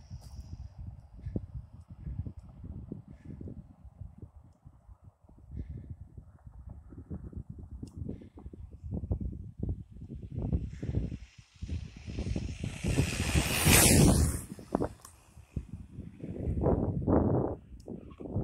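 Wind buffeting the microphone, then a brushless-motor RC truck (Adventurer 9203E, 2845 5900kv motor on 3S) making a full-throttle top-speed pass at about 57 mph: a rush of sound that builds from about twelve seconds in, is loudest near fourteen seconds and fades as the truck goes by.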